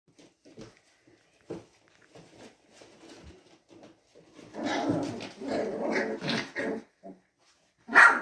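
A three-week-old Labrador–golden retriever mix puppy growling: faint short growls at first, then louder and longer from about halfway in, with a loud bark right at the very end. These are its first growls and barks.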